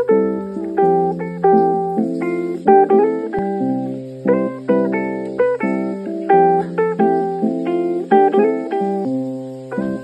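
Background music: a quick run of plucked notes picking out a repeating melody over a low held bass note that shifts every few seconds.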